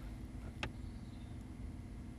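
A single short click from the Nissan Qashqai's instrument-cluster button being pressed, about half a second in, over a faint steady low hum.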